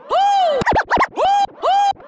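Turntable scratching of a pitched tone sample: short strokes that each rise and fall in pitch, with gaps between them. A little past half a second in comes a quick flurry of back-and-forth strokes.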